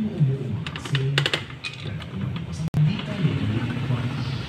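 A voice talking, with a quick run of light clicks about a second in.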